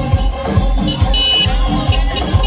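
Loud DJ dance music from a truck-mounted speaker stack, with a heavy bass kick a little over twice a second. A short, high steady tone sounds briefly just after a second in.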